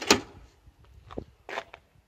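A sharp knock of wooden pallet-collar boards being handled on a stone box, followed by a few fainter clicks and knocks.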